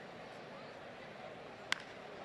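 A single sharp crack of a wooden bat hitting a pitched baseball, near the end, over a faint steady ballpark crowd murmur.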